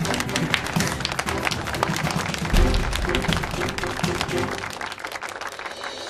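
A small group of people clapping hands together, quick and dense, thinning out and stopping near the end, over background music.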